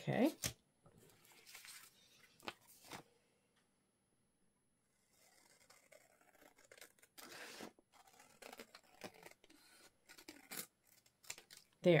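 Scissors snipping through paper, a run of separate cuts through the edge of an envelope covered with a glued-on book page, starting about halfway in.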